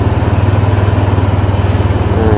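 Motor scooter engine idling close by, a steady, even low pulsing.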